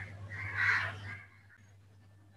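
A bird calling faintly in the background, twice in the first second, over a low steady electrical hum; then only the hum.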